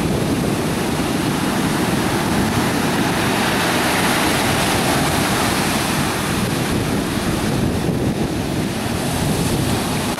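Ocean surf breaking and washing up a sandy beach, with one wave swelling louder about four seconds in. Wind rumbles on the microphone.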